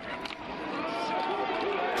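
Stadium crowd noise with indistinct voices, growing steadily louder as a football play gets under way.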